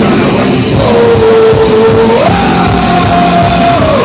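Live Oi!/hardcore punk band playing loud, with distorted electric guitars, bass and drums, and one long held note that steps up in pitch about two seconds in.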